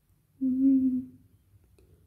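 A woman's short closed-mouth hum, one steady 'mmm' note of under a second, appreciative.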